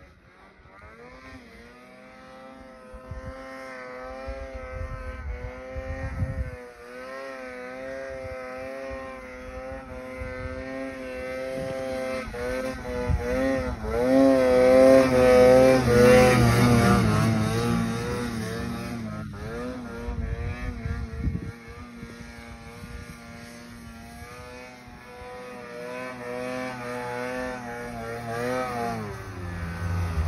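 Snowmobile engine revving as the sled rides through deep powder, its pitch rising and falling with the throttle. It grows loudest about halfway through, drops back, then builds again near the end.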